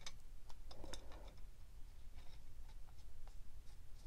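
Faint, scattered clicks and light scraping of a metal fitting being threaded by hand into a hydroboost brake booster unit.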